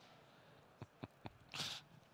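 A quiet pause with a few faint mouth clicks about a second in, then a short breath close to a headset microphone.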